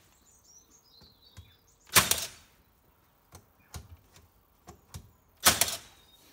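Cordless nail gun firing twice, fixing face plates to a door frame: one sharp shot about two seconds in and another near the end, with a few light clicks and knocks between.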